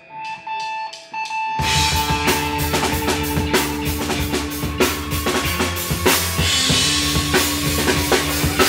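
A drummer's count-in of four stick clicks over a held ringing guitar tone, then about a second and a half in a hardcore punk band comes in at full volume with drum kit, distorted electric guitars and bass.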